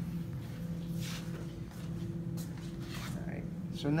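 Aluminium coil stock being handled and fed into a channel letter machine's straightener, giving a few faint, brief rubbing and handling noises over a steady low hum.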